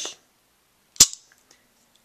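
A single sharp plastic snap about a second in: the spring-loaded hand piece of a small toy Astro Switch pops outwards as its button is pressed down.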